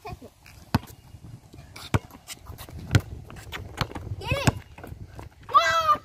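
A basketball bouncing on a concrete court, sharp bounces about once a second. Near the end comes a boy's loud shout or yell.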